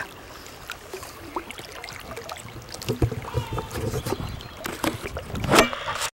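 High, fast spring-runoff river water sloshing and splashing close at hand, with scattered small knocks and a louder burst of noise shortly before the end.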